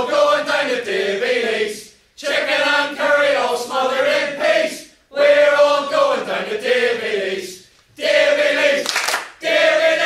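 A group of voices singing a chant-like song together without accompaniment, in phrases about two to three seconds long with brief breaks between them.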